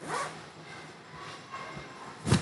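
A brief swishing rustle right at the start, quickly fading into faint low background noise.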